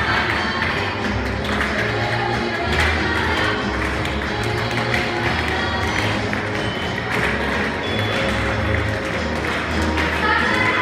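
Recorded dance music playing, with a repeating bass line. Light, frequent tapping of feet on the studio floor runs through it.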